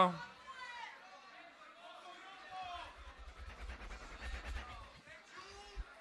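Faint voices of people talking in the background, with a low rumble for a couple of seconds in the middle.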